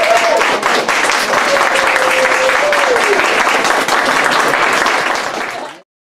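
Audience applauding after a solo cello piece, with a voice calling out over the clapping. The applause cuts off suddenly near the end.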